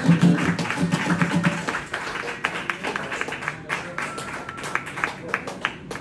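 Steel-string acoustic guitar hitting its closing strummed chords, ringing for a second or so. Under and after the chords comes a dense, irregular patter of sharp clicks like scattered clapping.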